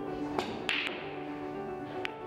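Background music with sustained tones, over which snooker balls click sharply a few times, the loudest about half a second in: the cue striking the cue ball and the balls colliding as the pack of reds is broken.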